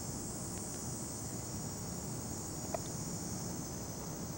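Steady high-pitched chorus of insects over a low background rumble, with a single faint tick a little before the end.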